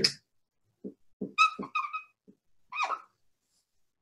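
Dry-erase marker squeaking on a whiteboard in several short strokes as units are written, with a few soft taps of the marker on the board.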